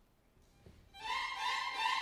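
A full orchestra's violins strike up suddenly about a second in, after near silence, in the opening bars of an overture.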